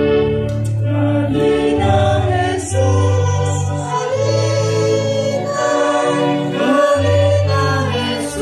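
A congregation singing a hymn together at a Mass, sustained sung notes over a steady low accompaniment.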